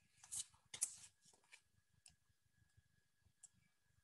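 Flashcards being handled and swapped by hand: a brief rustle and then a sharp tap within the first second, followed by a few faint clicks, all quiet.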